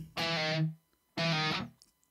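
Distorted electric guitar playing two open-string notes, each held about half a second and then cut off, with a short gap between them.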